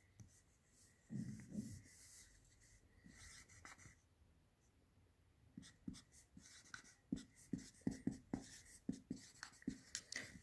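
Felt-tip marker writing on a whiteboard, faint. There is a soft stretch of strokes early on, then a quick run of short separate strokes and taps in the last four seconds.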